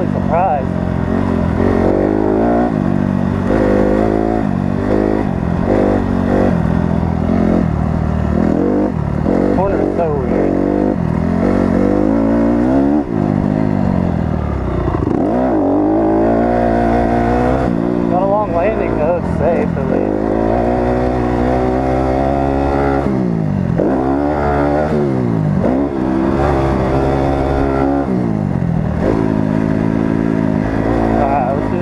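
A 2018 Honda CRF250R, a single-cylinder four-stroke motocross bike, being ridden hard on a dirt track. The engine revs up and falls back again and again as the throttle is opened and shut through the jumps and corners.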